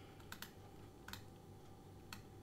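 A few faint clicks at a computer: a quick group about a third of a second in and a single click about a second in, over a faint steady hum.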